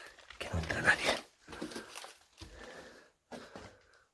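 A man's voice in short, indistinct bursts, muttering with no clear words, in a small cellar room; the loudest burst comes about half a second to a second in, followed by quieter ones.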